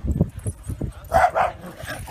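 Corgi puppies barking: two short, quick barks a little over a second in, after a patter of low thumps.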